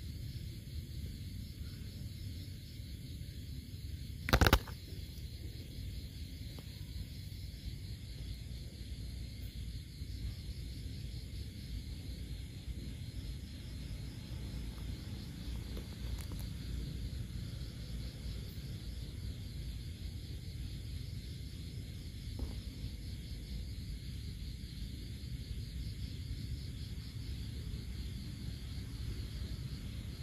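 Faint steady chorus of night insects over a low rumble, with one sharp loud knock about four seconds in and a faint click later.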